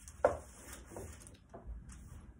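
A clothes iron set down with one sharp knock on a wooden worktable, followed by a few softer taps and the rustle of crisp packets being pressed flat by hand.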